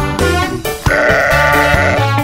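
A sheep bleats once, from about a second in and lasting about a second, over background music with a steady beat.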